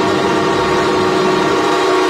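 Wurlitzer theatre pipe organ holding a loud, steady chord of many pitches: the closing chord of the piece.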